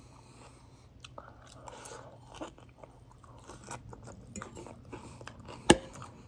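Close-up chewing of a mouthful of salad, with wet crunching of leaves and irregular small clicks. One sharp, loud click comes near the end.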